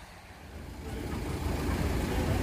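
Road traffic: a car's engine and tyres rumbling, growing louder from about half a second in.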